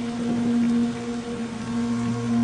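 Steady low drone of the mantra's musical accompaniment, holding one note with no voice, in the gap between chanted verses.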